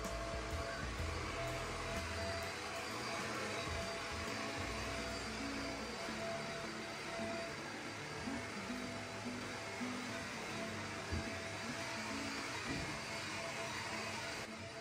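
Corded upright vacuum cleaner running steadily over carpet: a dense rushing motor noise with a thin steady whine, and faint background music underneath.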